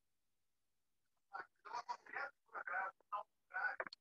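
Faint, indistinct speech: a voice muttering quietly off-mic in short broken syllables. It starts about a second and a half in, after a near-silent pause.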